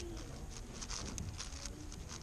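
X-Man Spark V2 7x7 speedcube being turned quickly by hand: a rapid, irregular run of light plastic clicks as the layers snap round, about four or five a second.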